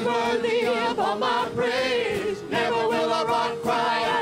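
Live church worship song: several voices singing together over a held note, with hand drums keeping time.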